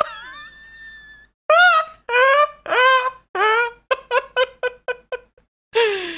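High-pitched laughter: an opening squeal, then four long rising-and-falling whoops, then a quick run of short laughs about five a second, ending on a falling breath.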